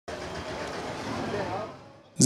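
Street ambience: indistinct talking of men's voices over traffic noise, fading out near the end.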